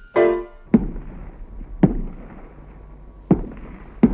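A piano chord fades out, then a hammer drives a nail into a wall with three single blows, spaced one to one and a half seconds apart.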